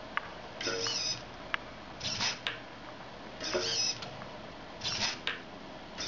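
Small hobby servo whirring in four short bursts about one and a half seconds apart as it tilts the gyro wheel's wire track back and forth on a 1.3-second delay cycle, with a few sharp clicks in between.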